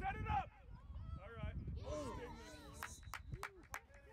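Voices calling out across a lacrosse field. A quick run of sharp clacks comes about three seconds in.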